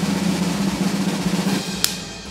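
Snare drum roll sound effect building suspense while a task is revealed. It fades slightly and ends with a single sharp hit near the end.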